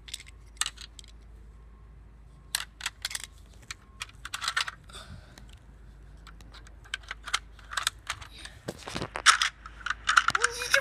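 Small sharp clicks and clatters of a broken toy model car and its loose door being handled, in scattered clusters, the loudest near the end.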